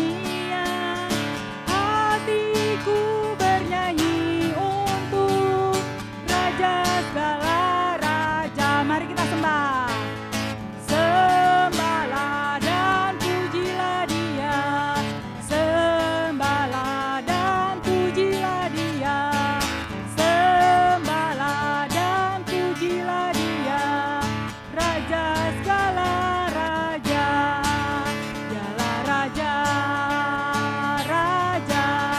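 A small group singing an upbeat Indonesian children's worship song, led by a woman's voice on a microphone, accompanied by a strummed acoustic guitar.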